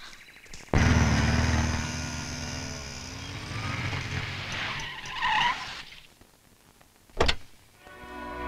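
Motorcycle engines revving and pulling away, starting abruptly and fading out over about five seconds. A single sharp knock follows about seven seconds in.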